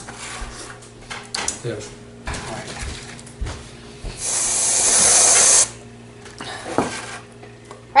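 Aerosol can of whipped cream spraying in one continuous hiss of about a second and a half, loading the Pie Face game's hand with cream; it swells slightly and cuts off suddenly. A few light knocks from handling the game come before and after.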